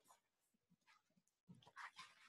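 Near silence: room tone with faint brief rustles and small knocks, a slightly louder cluster about one and a half seconds in.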